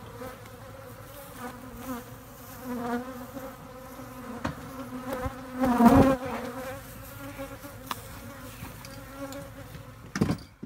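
Africanized honey bees buzzing steadily in the air around a worked hive, with one bee swelling loud as it flies close past the microphone about six seconds in.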